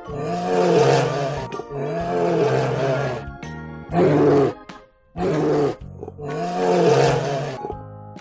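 Bear roaring, five rough roars in a row with short gaps, over steady background music.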